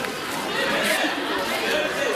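Outdoor crowd chatter: several voices talking at once, none standing out as one clear speaker.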